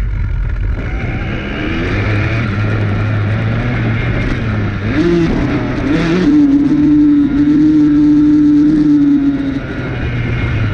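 Dirt bike engine riding through long grass: running at lower revs at first, then revving up about five seconds in and held at a steady higher pitch, louder, before easing off near the end.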